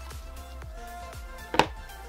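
Soft background music with one sharp click about one and a half seconds in, from small plastic GoPro mount parts (the quick-release buckle and thumb screw) being handled.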